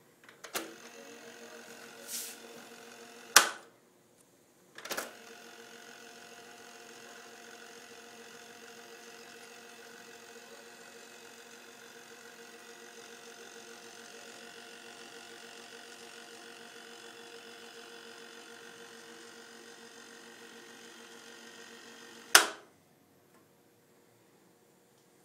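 Sharp GF-454 boombox's cassette deck: the piano-key controls clunk down several times and the tape transport motor runs with a steady mechanical hum. The longest run lasts about 17 seconds and ends with a loud click as a key stops it.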